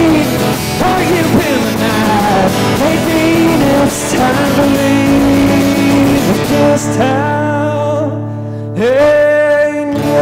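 A man singing with his own strummed acoustic guitar, a live solo folk-country song. There is a short lull about eight seconds in, then a loud, long-held sung note.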